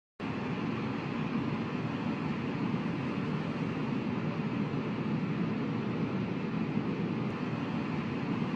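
A steady, low noise with no tone or beat in it, starting suddenly and cutting off suddenly, laid under an animated title intro as a sound effect.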